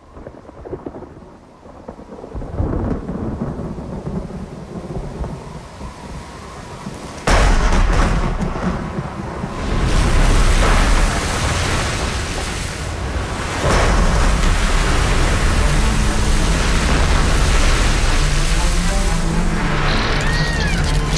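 A storm: rain and rumbling that build up from quiet, with sudden loud thunderclaps about seven and ten seconds in, then heavy, continuous rain and thunder rumble.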